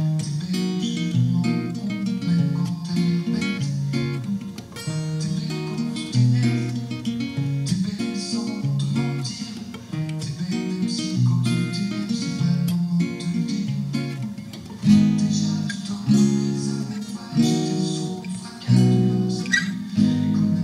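Acoustic guitar played with the fingers: a stepping bass line under chords plucked on the higher strings, in a steady rhythm. The chords are struck harder and louder in the last few seconds.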